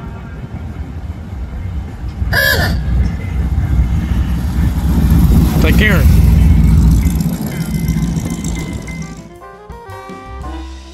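A hot rod's engine rumbles as the car drives slowly past close by. The sound builds to its loudest a little past halfway, then fades. Music with saxophone comes in near the end.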